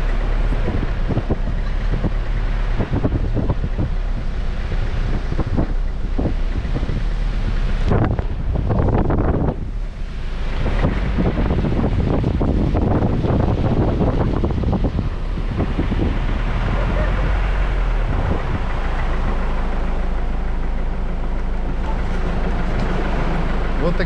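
A vehicle driving along wet beach sand, its engine running steadily, with wind buffeting the microphone at the open side window and surf faintly behind.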